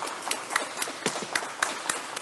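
Applause: hands clapping, the nearest clapper at about four claps a second over fainter clapping.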